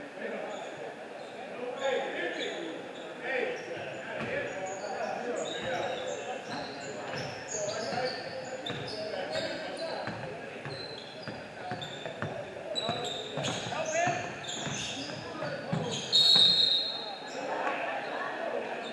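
Basketballs bouncing on a hardwood gym floor, with sneakers squeaking and players' voices calling out in an echoing gym. Near the end, a short, loud, high whistle blast, the loudest sound.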